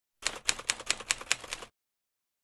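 Typewriter key clacks used as a sound effect: a quick run of about five strikes a second for a second and a half, then stopping abruptly.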